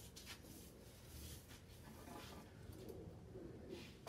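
Near silence, with faint light rubbing and small knocks of glued wooden strips being pushed even by hand in a bending jig.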